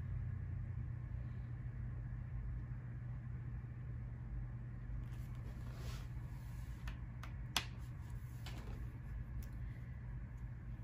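A steady low hum of room noise. About two-thirds of the way through come a few light knocks and taps as a spiral-bound planner is lifted and set back down on a wooden desk, one sharper than the rest.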